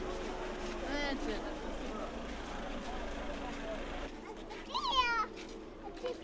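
Two short, high-pitched voiced cries, one about a second in and a louder one about five seconds in, over a steady murmur of voices from people walking in the street.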